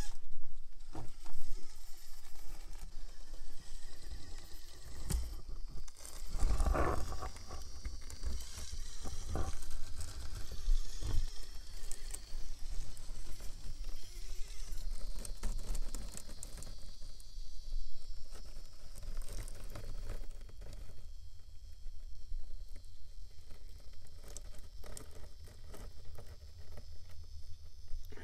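Traxxas TRX-4M micro rock crawler climbing: a faint high whine from its motor and geartrain that rises and falls with the throttle. Scattered taps and scrabbling come from the tires and chassis against the rocks, with a louder bump about seven seconds in.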